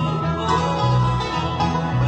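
Live bluegrass band playing an instrumental passage between sung verses: banjo, guitars and fiddle over a bass walking between low notes.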